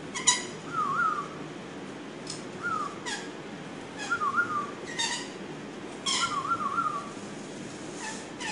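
Lorikeets calling: several short, sharp, shrill calls, with a wavering up-and-down whistle repeated about four times between them.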